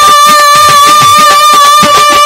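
Live Bengali Baul folk music: one long held high note, slightly wavering, over a steady beat of barrel-drum strokes with bending bass tones.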